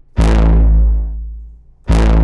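Output Substance bass synth played twice: a deep bass note with a bright attack that darkens and fades over about a second, then a second identical note struck just before the end.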